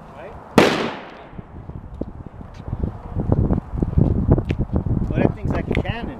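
A single shot from a .54 smoothbore serpentine arquebus with a 60-grain black-powder charge, about half a second in, a sharp crack with a short fading echo. Wind rumble on the microphone and low voices follow.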